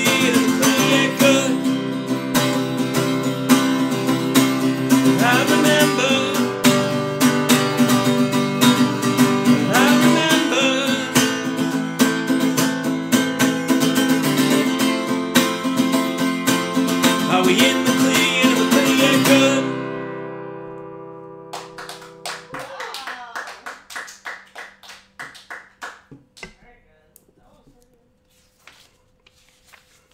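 Acoustic guitar strummed steadily, with a man singing over it. About two-thirds of the way through, the strumming stops and the last chord rings out. A few softer picked notes follow and fade away.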